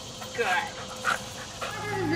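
A dog playing tug with a toy, giving short vocal sounds about half a second in and again about a second in.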